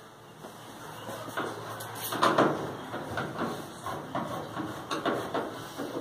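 Hand screwdriver turning fixing screws into a clothes dryer's sheet-metal frame: irregular scraping and clicking of metal on metal, loudest a little past two seconds in.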